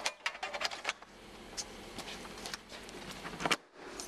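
Sliding-door head filler being rotated by hand into the header track. A quick run of light clicks and taps is followed by scattered ticks, then one sharper click near the end as the filler snaps into place.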